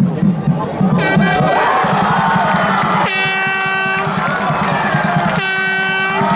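Football spectators' air horn sounding two steady blasts of about a second each, one about three seconds in and one near the end, with a shorter, higher toot about a second in, over continuous crowd noise.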